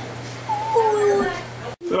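A child's high, strained whine: one drawn-out call that slowly falls in pitch, over a steady low hum, cut off sharply near the end.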